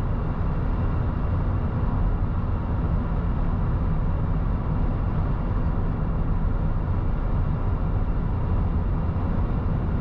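Steady road and engine noise heard inside a moving car's cabin: an even low rumble with tyre noise at driving speed.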